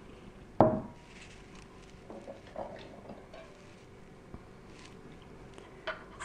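A filled glass canning jar set down on a wooden board: one sharp knock with a brief ring about half a second in, followed by faint clinks of jars and utensils being handled.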